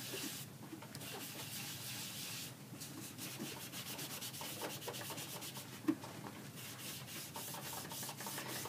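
A sponge loaded with ink is rubbed back and forth over cardstock-weight designer paper, inking it. It makes a soft, steady scrubbing of quick, repeated strokes, with one light tap about six seconds in.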